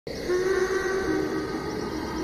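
Horror film soundtrack: a sustained drone of several steady held tones, one low and a few higher, starting at once and holding without a break.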